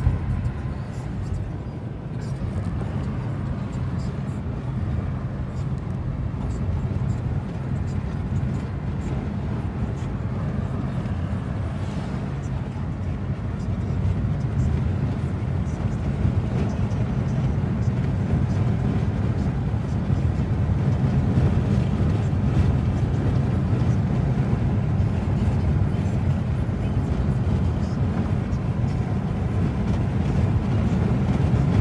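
In-cabin engine and road noise of a car driving, a steady low rumble that grows louder about halfway through.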